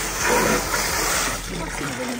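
Water from a garden hose pouring into a bucket: a steady rushing splash that eases slightly in the second half.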